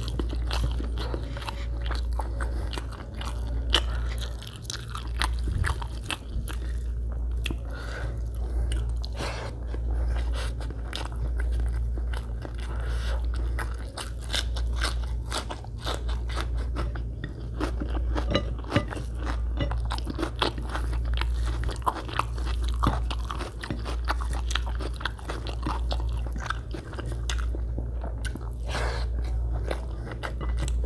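Close-miked chewing and biting of a person eating egg biryani by hand, many small mouth clicks and crunches, with fingers working the rice on a glass plate. A steady low hum runs underneath.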